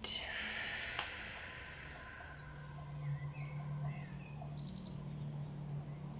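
A long, slow exhale, a breathy hiss that fades away over about two seconds, followed by faint bird chirps over a steady low hum.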